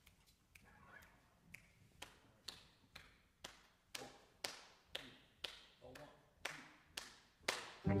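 A steady tempo count-off of sharp clicks, about two a second, getting louder as it goes, setting a medium-swing tempo. Right at the end the big band's brass section comes in together.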